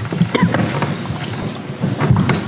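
Uneven low rumble of room noise on the microphones, with a few faint clicks.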